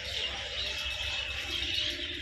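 Steady low background hum and hiss with no distinct sound event.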